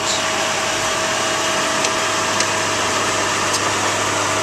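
A vehicle engine running steadily, with a constant low hum and a steady mid-pitched tone under an even hiss.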